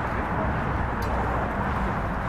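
Steady outdoor background noise with a low rumble, and one short, sharp click about a second in.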